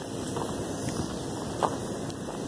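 Steady outdoor background noise with wind on the microphone, with a few faint brief sounds scattered through it.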